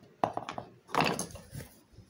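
Handling noise from moving a plastic seat trim piece and the camera: a knock and rustle just after the start, then a louder clatter about a second in.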